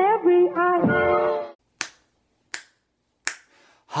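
A short sung jingle ends about one and a half seconds in. Then come three sharp finger snaps, evenly spaced about three-quarters of a second apart, counting in, before a man starts singing unaccompanied right at the end.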